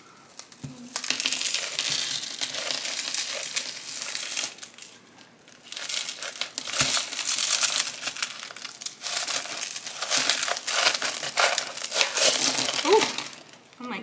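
Thin clear plastic nursery pot being squeezed and crinkled by hand to loosen the root ball for repotting. It comes in two long stretches of crinkling with a short lull between, and near the end chunky potting mix spills out onto a plastic potting mat.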